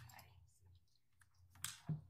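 A few faint clicks over quiet room tone, with one sharper click near the end: a computer mouse clicking through the exhibit files on the courtroom display.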